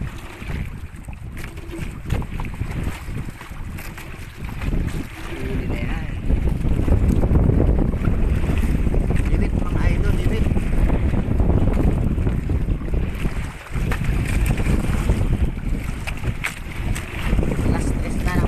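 Wind buffeting the microphone on an open fishing boat at sea: a rough, unpitched roar that grows louder about six seconds in and drops briefly near the fourteen-second mark.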